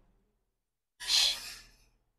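Blank for the first second, then a man's single short breath about a second in, lasting about half a second.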